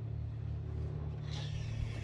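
A steady low motor hum, unchanging in pitch, with a faint higher hiss in the second half.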